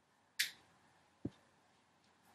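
Two short clicks with quiet between: a bright, sharp snap-like click about half a second in, then a duller low knock a little past a second.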